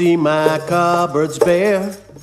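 A song playing: a singer holding notes, with vibrato toward the end, over steady instrumental accompaniment.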